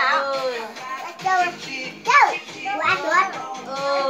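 Several young children's high-pitched voices talking and calling out over one another, with one sharp rising-and-falling cry about halfway through.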